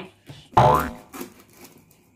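Edited-in comic sound effect: a short, loud rising pitch sweep with a deep thud under it, about half a second in. It is followed by a few faint taps of hands on a cardboard box.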